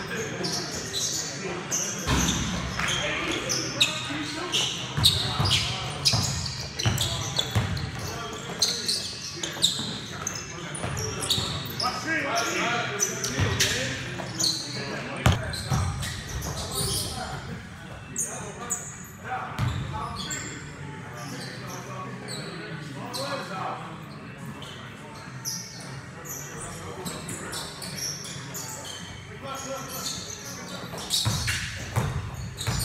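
Basketball game on an indoor gym court: the ball bouncing on the floor in repeated sharp knocks, mixed with players' and onlookers' voices calling out, echoing in the large hall. The knocks and voices are busiest in the first half and thin out in the second.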